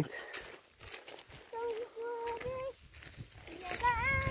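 Faint, high-pitched child's voice in a few drawn-out notes, sing-song rather than ordinary talk.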